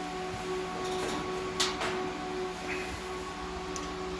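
A rack of Dell EMC servers and storage running: the steady whir of cooling fans with a few held humming tones, and a sharp click about one and a half seconds in.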